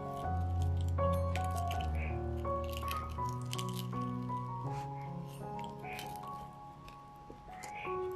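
Background music of held notes, over which a pizza cutter wheel rolls through the crust of a pan-fried potato cheese bread, making repeated crackles and squishes.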